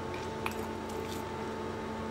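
Quiet handling of a plastic snack wrapper and chewing: a few faint soft ticks and rustles over a steady low hum.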